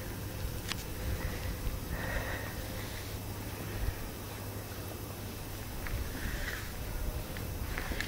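Low, uneven rumble of wind on the microphone, with two faint breathy hisses, about two seconds in and again about six seconds in.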